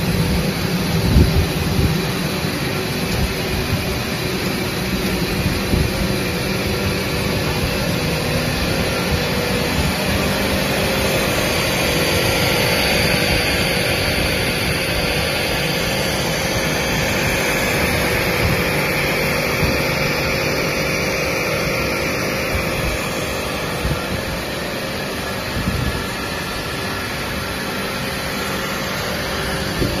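A three-layer PE pipe extrusion line running: steady machine noise from its drives, pumps and fans, with a constant low hum.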